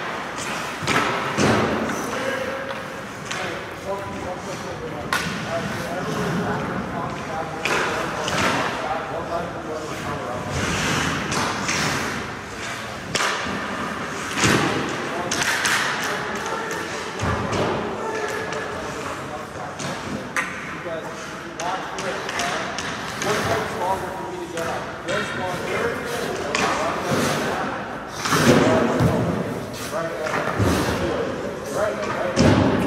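Ice hockey goalie practice: repeated thuds and knocks from goalie pads, sticks and pucks against the ice, net and boards, mixed with voices. A cluster of heavier knocks comes near the end.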